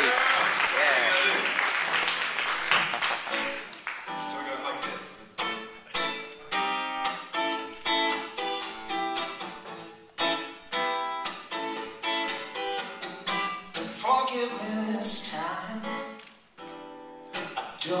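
Audience applause for the first few seconds, then a solo acoustic guitar strummed in a steady rhythm as the instrumental intro to a song.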